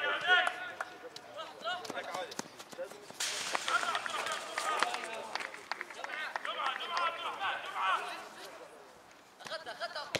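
Players and coaches shouting and calling out across an open football pitch during play, with a few sharp knocks of a football being kicked.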